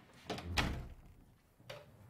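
A door closing with a dull thud, then a lighter knock about a second later.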